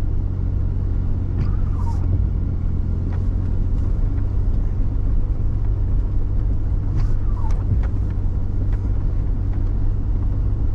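Steady low rumble of a vehicle's engine and tyres heard inside the cabin, driving slowly over a snowy dirt track. Two short falling squeaks about five seconds apart, the first as the windshield wiper sweeps across the glass, and a few faint clicks.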